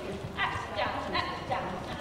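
Ponies walking on the soft surface of an indoor riding arena, their hoofbeats under indistinct voices.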